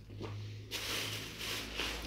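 Clothing and a plastic carrier bag being handled and rustling, the rustle starting about two-thirds of a second in, over a faint steady low hum.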